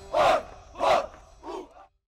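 A group of marching soldiers shouting in unison: three loud shouts about two-thirds of a second apart, the third fainter, then the sound cuts off suddenly.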